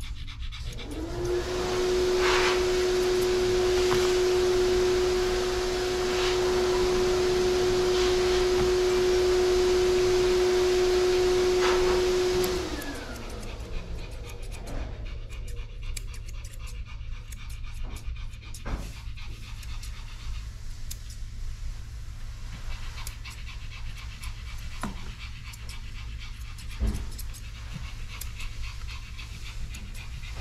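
An electric blower motor spins up and runs steadily for about twelve seconds, a steady tone over rushing air, then winds down with falling pitch. Afterwards a dog pants quietly, with a few light clicks.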